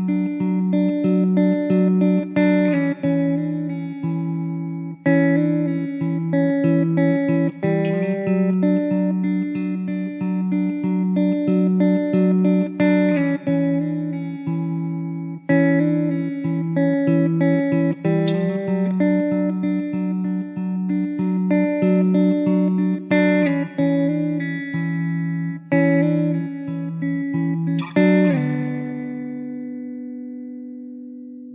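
Gentle solo guitar instrumental music: a steady stream of plucked notes over sustained low notes, ending on a chord struck near the end that rings out and fades.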